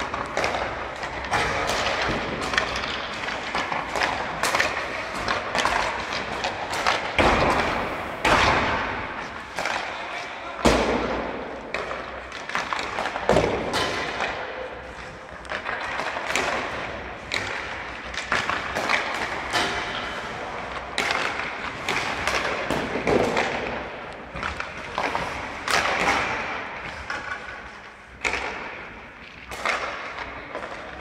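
Ice hockey practice on an indoor rink: repeated sharp knocks and thuds of sticks striking pucks and pucks hitting the boards and glass, over the scrape of skate blades on the ice, with players' voices now and then.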